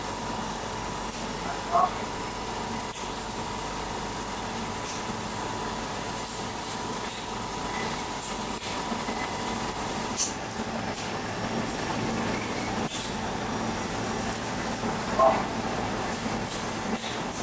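Laser glass-cutting machine running while it cuts a 1.1 mm ITO glass sheet, its head traversing the bed: a steady machine hum with a faint steady tone and light scattered ticks. Two brief louder sounds come about two seconds in and near the end.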